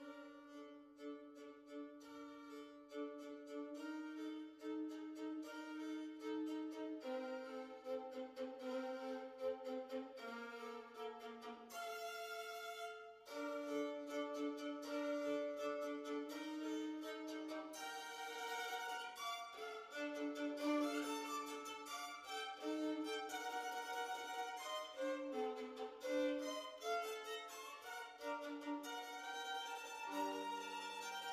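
Violin music with long bowed notes moving from pitch to pitch and little bass, dipping briefly about halfway through.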